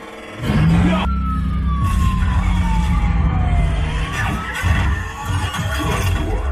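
Dark ride's soundtrack over the ride speakers: a deep rumble with music under it. A long, clear tone glides steadily down in pitch from about a second in.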